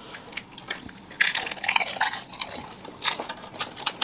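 Close-miked crunching of crisp fuchka (pani puri) shells as they are bitten and chewed, with a dense burst of crackling a little after a second in and another crunch about three seconds in.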